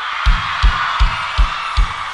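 Live concert music stripped down to a lone kick drum beating steadily, about two and a half beats a second, over a haze of higher sound with light ticks on top.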